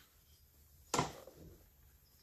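A single sharp knock about a second in, from the bowfishing bow being handled and turned upright, against a quiet background.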